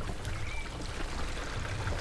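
Gray water draining from an RV's gray tank through a flexible sewer hose into a portable sewer tote, a steady, even flow.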